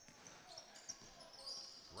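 Quiet box lacrosse arena sound with a few light, sharp knocks from the play on the floor.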